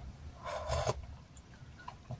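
A single slurp as liquid is sipped from a bowl held to the mouth, lasting about half a second, starting about half a second in.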